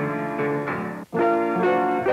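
Player piano playing a tune, with new notes and chords struck every few tenths of a second. The music breaks off briefly about a second in, then a new chord comes in.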